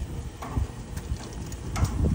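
Metal grill tongs lightly clicking and knocking against the grill grates and a plastic serving platter as grilled eggplant slices are lifted off, over a low rumble.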